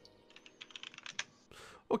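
Typing on a computer keyboard: a quick, irregular run of about a dozen key clicks lasting about a second.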